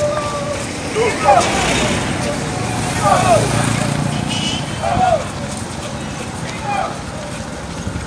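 Runners' voices calling out in short shouts every second or two, over the steady low rumble of a motorcycle engine and street traffic.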